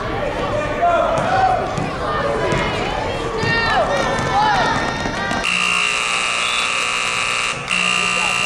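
Voices of players and spectators in a gym, then about five and a half seconds in a scoreboard buzzer sounds one long steady tone that runs on with a brief break near the end, signalling the end of the period.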